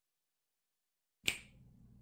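Silence, then a single sharp click about a second and a quarter in, followed by a faint low hum.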